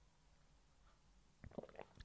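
Near silence: a pause in speech with faint room tone, and a few faint short clicks near the end.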